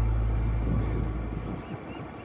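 Background music fading out over the first second and a half, leaving the quieter noise of a motorbike ride: engine running and wind on the microphone.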